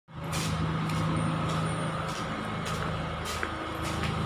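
A steady low mechanical hum, like an engine running, with short scuffing steps at a walking pace over it, about every half second.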